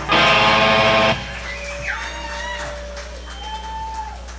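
Rock band with electric guitars and drums playing a final loud chord that cuts off about a second in. After it comes a steady amplifier hum with a few thin held tones that waver and bend in pitch.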